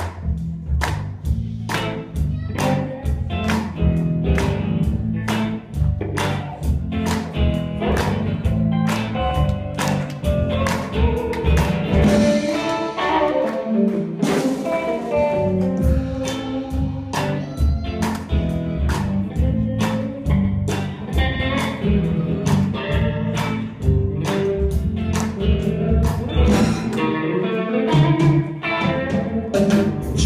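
Live band music in a blues style: electric guitars over bass and drums, with a steady beat of sharp hits about twice a second.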